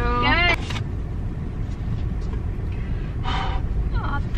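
Steady low rumble of road and engine noise inside a car's cabin, with a voice trailing off at the start and a brief voice sound about three seconds in.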